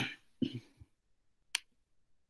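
A man clearing his throat: a loud rasp right at the start and a shorter one about half a second in, then a single sharp click about a second and a half in.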